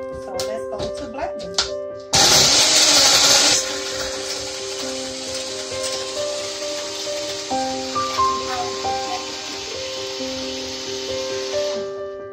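Personal blender blending a milk shake with ice cubes: it starts abruptly about two seconds in, loudest for the first second and a half as the ice is crushed, then runs steadily until it cuts off just before the end. Background music with piano notes plays throughout.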